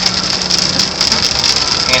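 Steady car noise heard from inside the cabin on a phone microphone: a constant hiss over a low engine hum.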